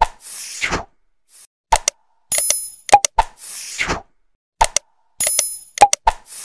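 Like-and-subscribe animation sound effects: sharp clicks, a bell-like ding and a falling whoosh. The set repeats three times, about every three seconds.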